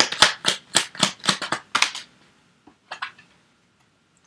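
A deck of tarot cards being shuffled by hand: a quick, even run of card slaps, about four or five a second, that stops about two seconds in. A couple of faint clicks follow as the cards are handled.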